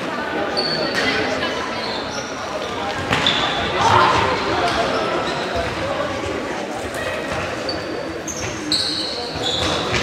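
Indoor football match in a sports hall: the ball being kicked and bouncing off the hall floor, several knocks, and short high squeaks of trainers on the floor, mostly near the end. Players and spectators call out throughout, all echoing in the large hall.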